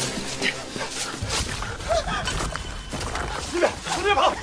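People running through dense undergrowth: quick footfalls and crackling, rustling leaves and branches, with short breathless gasps and cries, over a low rumble.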